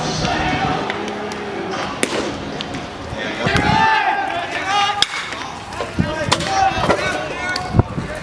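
Baseball game sounds: people's voices calling out briefly about three and a half seconds in, and a few sharp knocks scattered through, the loudest near the end.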